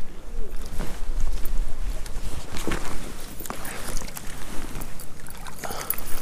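A hooked rainbow trout splashing at the water's edge as it is reeled in and scooped into a landing net, with irregular water and handling noises. A low wind rumble on the microphone in the first half.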